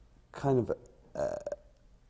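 Speech only: a man speaking haltingly, 'kind of, uh', with a pause and a short, rough drawn-out 'uh' of hesitation.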